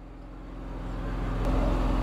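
A motor vehicle coming closer, its engine hum and road noise growing steadily louder.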